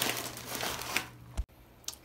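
Zip-top plastic bag of ceramic filter rings being handled, crinkling; it stops abruptly with a click about one and a half seconds in.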